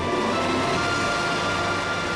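Cartoon sound effect of a rocket booster firing: a steady rushing noise at an even level, with background music underneath.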